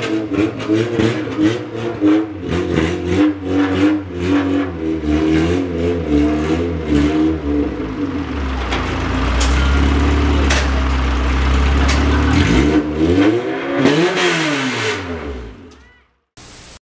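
A car engine revved in quick repeated blips, then held at a steady low drone for a few seconds, with one last rise and fall near the end before it fades out.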